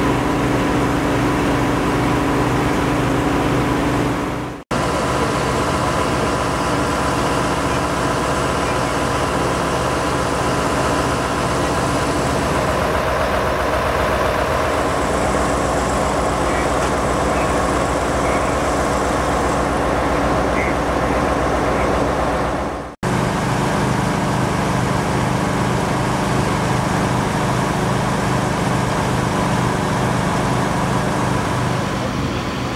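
Steady engine hum from idling emergency vehicles and rescue machinery, with voices now and then. The sound drops out briefly twice.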